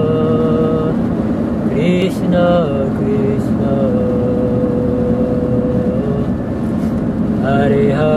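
Kirtan singing: a solo voice sings slow, long drawn-out notes that glide between pitches, with one note held for about two seconds midway, over a steady low drone.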